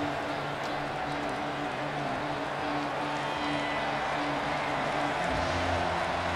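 Football stadium crowd noise, with a brass band playing held notes underneath; a low rumble joins near the end.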